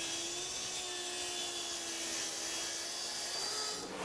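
Plunge-cut track saw running along its guide rail, ripping through a sheet of plywood. The sound stays steady and even throughout, a hum with a faint steady tone.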